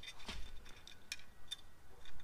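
A few faint, light metal clicks: a steel screwdriver shaft ticking against the nut and washer in a plasma cutter's torch connector opening.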